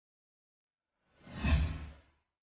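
A single whoosh sound effect, swelling up about a second in and fading away within about a second.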